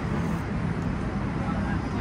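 Steady hum of road traffic from a busy city street, passing cars making a low continuous rumble.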